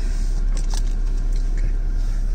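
Steady low road rumble inside the cabin of a moving Chevy Equinox, tyres and engine running evenly, with a few faint clicks.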